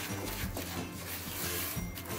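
A spatula scraping and mashing softened butter and sugar against the side of an enamel bowl, over quiet background music.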